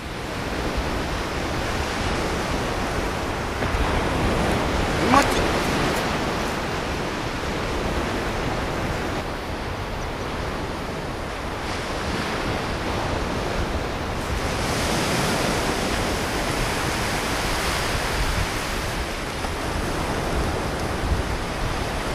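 Sea surf washing over shallow tidal flats, a steady rushing noise mixed with wind on the microphone. A short pitched sound comes about five seconds in.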